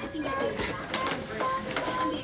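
Crinkling and rustling of a clear plastic gift bag and tissue paper being pulled open by hand, with a faint melody of held notes playing underneath.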